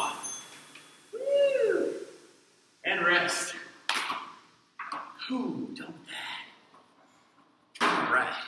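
A man breathing hard after an all-out rowing sprint: loud gasping exhales about once a second, with a long voiced groan about a second in.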